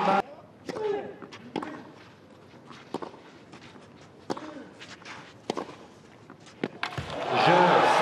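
Tennis rally on a clay court: a string of racket strikes on the ball, about a second apart, over a hushed crowd. Near the end the crowd breaks into cheering and applause as the point is won.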